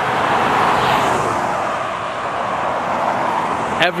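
A car passing on the highway close by: tyre and road noise swells to its loudest about a second in, then slowly fades.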